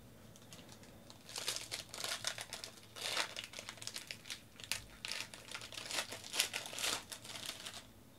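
Foil trading-card pack wrapper torn open and crinkled by hand, in a string of crackling bursts starting about a second in.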